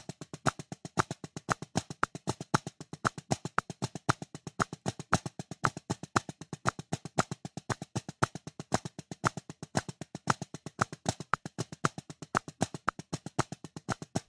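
Drumsticks playing a flam paradiddle combination (single, double and triple flam paradiddles) at 190 BPM: a rapid, even stream of sharp strokes with a regular pulse of stronger accented hits.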